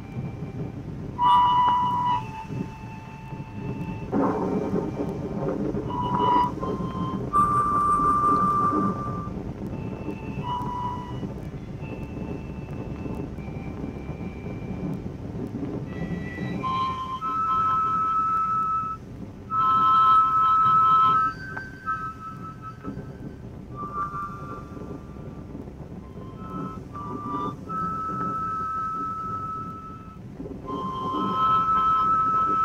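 A harmonica playing a slow tune of long held notes that step up and down in pitch, over a steady low rumble from an old film soundtrack.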